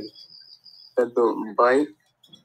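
A faint, thin, high-pitched steady tone for about the first second, then a voice speaking a few short syllables, which is the loudest sound.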